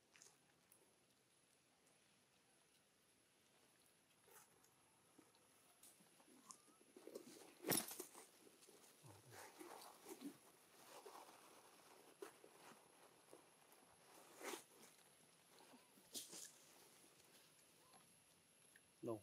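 Near silence with faint rustling and a few sharp clicks or taps, the loudest about eight seconds in.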